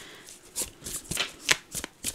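A deck of tarot cards being shuffled by hand, a quick run of card flicks and slaps with the sharpest about one and a half seconds in.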